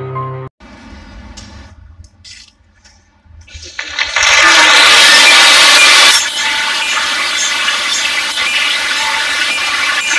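Sustained synthesized intro chords stop abruptly about half a second in. After a few faint seconds, studio audience applause breaks out, loudest for about two seconds before settling to a lower, steady level.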